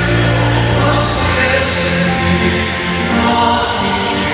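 Live concert music: sustained chords under many voices singing together, choir-like, at a steady level.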